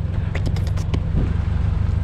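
A car engine idling steadily, with a few short clicks about half a second in.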